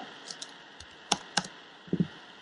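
A few computer keyboard keystrokes, single short clicks, as a number is typed into a program's input field. The clearest come about a second in, again shortly after, and near the end.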